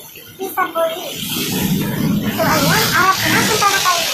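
A voice speaking over loud street noise. The rushing noise swells up about a second in and stays loud.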